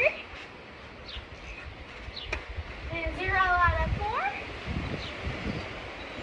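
A high-pitched voice calls out once, about three to four seconds in, over low rumbling noise.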